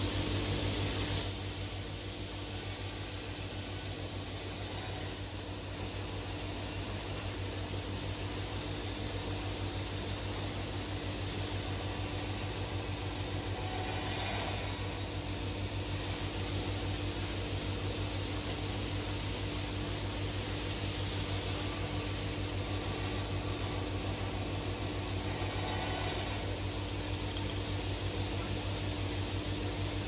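Panel saw and dust extraction running, a steady machine noise with a constant low hum and no sharp knocks. Cut pieces of board pile up on the table, so the saw is cutting during this time.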